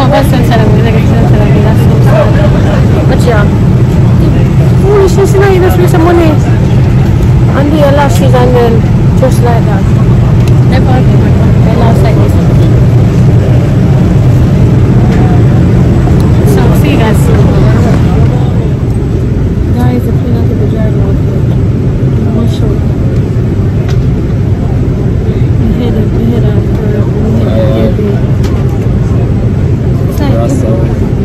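Airliner cabin noise: a steady low hum, with indistinct voices over it, mostly in the first half.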